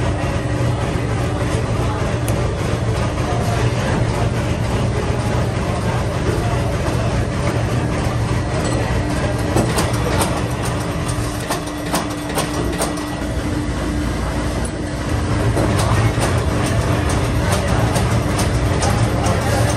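Factory-floor machinery around a stator coil-inserting machine: a steady low hum with a faint steady tone, broken by scattered sharp metallic clicks and knocks. Voices can be heard in the background.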